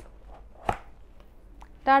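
A single short click from a cardboard album box as its front flap is pulled open, about two-thirds of a second in. A sung, held "ta-da" begins just before the end.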